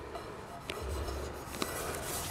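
Faint handling sounds of gloved hands moving and rubbing a cast iron skillet, with a few light ticks.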